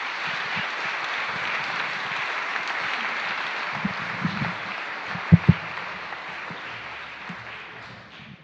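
Audience applauding steadily, dying away toward the end. Two sharp knocks sound a little past halfway.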